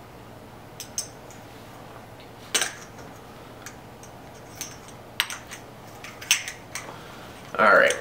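Metal paintball barrel sizer inserts clinking and tapping against one another as a handful is gathered up: scattered sharp clinks, about ten over several seconds.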